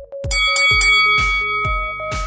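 Electronic dance music with a steady kick drum about three beats a second, and a bell chime struck about a third of a second in that rings on for over a second: a workout timer's signal marking the start of the rest interval.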